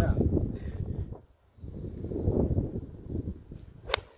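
A golf club strikes a golf ball on a tee shot: one sharp, crisp crack just before the end. It is struck cleanly, a shot the playing partner says was fizzed.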